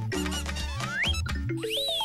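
Playful children's TV jingle music with quick percussion and two squeaky, whistle-like rising glides, the first about a second in and the second near the end.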